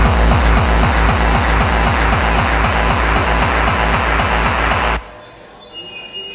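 Loud breakcore: a fast, dense electronic beat with a heavy kick drum striking several times a second. It cuts off abruptly about five seconds in, leaving things much quieter.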